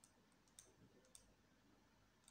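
Near silence with a few faint, sharp clicks from a stylus tapping on a writing tablet during handwriting.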